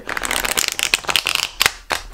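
A tarot deck being riffle-shuffled: a rapid, crackling run of card edges flicking past each other for about a second and a half, then two sharp taps near the end as the cards are pushed back together.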